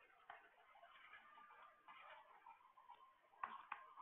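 Near silence with faint scratching and two sharp ticks about three and a half seconds in, from a stylus writing on a pen tablet.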